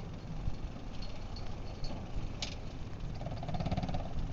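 Old Dacia car engine fitted to a home-made tractor, idling with a steady low rumble. A sharp click sounds a little past halfway, and a quick rattle comes near the end.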